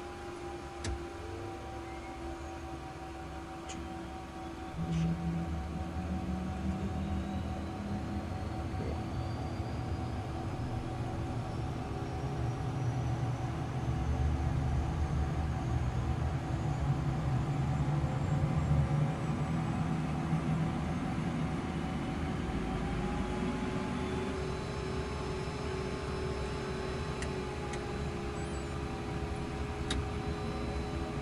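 Cessna Citation M2 turbofan engine starting up: a faint whine climbs slowly in pitch while a low rumble comes in about five seconds in and grows louder about fourteen seconds in, over two steady hum tones.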